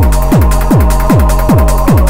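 Acidcore electronic dance music: a heavy distorted kick drum about two and a half times a second, each kick dropping in pitch into a long low tail, under a sustained synth tone.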